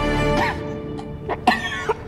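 Background music with held tones, loud for the first half-second and then softer. Over it, a man makes a few short throaty sounds, like a cough; the loudest comes about one and a half seconds in.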